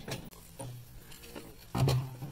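Consumer aerial firework shells going off: a few faint pops, then a sharp bang near the end.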